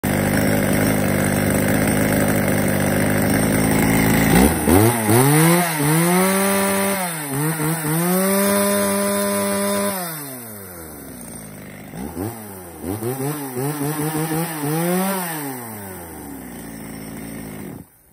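Echo Kioritz CSVE3502G two-stroke chainsaw idling, then revved in a series of throttle blips. It is held at high revs for a couple of seconds, dropped back, blipped several more times and settled to idle before cutting off abruptly at the end.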